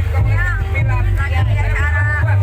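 Loud amplified live band music from a stage PA, with heavy steady bass and a voice singing with wavering vibrato over it.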